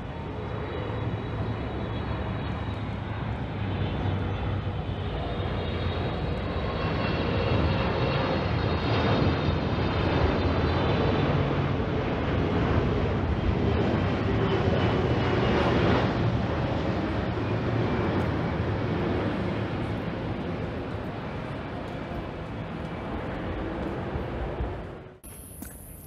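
Twin-engine jet airliner passing low overhead: the engine roar swells to a peak about halfway through and then fades, with a thin high whine that slides down in pitch as it goes over. The sound cuts off suddenly about a second before the end.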